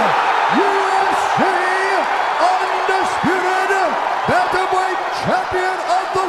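A ring announcer's long, drawn-out sing-song call proclaiming the new champion, each word held on a flat note, over an arena crowd cheering loudly.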